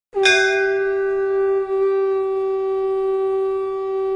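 A conch shell (shankh) blown in one long note. It swoops up in pitch at the start and is then held steady, with a brief dip in strength about one and a half seconds in.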